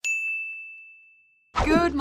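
A single bright ding, a bell-like chime sound effect struck once and fading away over about a second and a half, marking a map pin and title card appearing on screen.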